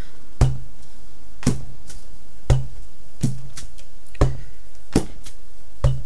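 Wooden-block rubber stamps being tapped on an ink pad and pressed onto a padded car sunshade: seven short knocks, about one a second, each with a dull thud.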